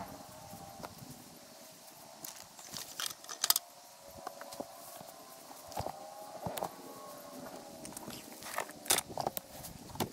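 Grass clippings tipped from a plastic bin onto a compost pile: soft rustling and a few sharp knocks, around three and a half, six and a half and nine seconds in. A faint, drawn-out pitched sound runs underneath.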